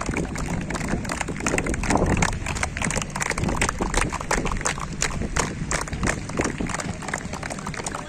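A group of people clapping: many uneven, scattered hand claps, several a second, running on without a steady beat.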